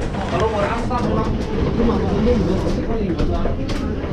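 Indistinct voices of people talking, over a steady low hum and rumble, with a few short sharp clicks.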